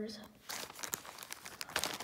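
Clear plastic zip bag crinkling as a hand grabs and handles it, a dense run of small crackles starting about half a second in and lasting about a second and a half.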